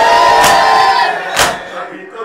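A crowd of mourners beating their chests in unison (matam), two loud slaps about a second apart. Many men's voices shout one long held cry together over the first slap.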